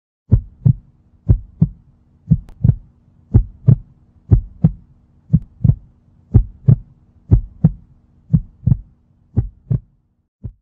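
Heartbeat sound effect: ten pairs of short, low thumps (lub-dub), about one pair a second, over a faint steady low hum.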